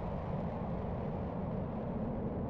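A steady low rumble, with its higher part gradually dying away.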